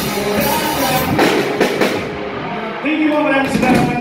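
Live rock band playing: drum kit, electric guitars and bass under a male singer's voice. About halfway through the cymbals drop out for under a second, then the drums and cymbals come back in near the end.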